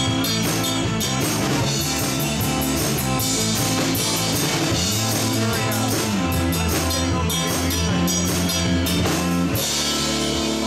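Live rock trio playing: electric guitar, electric bass guitar and drum kit with cymbals, at a steady, full level.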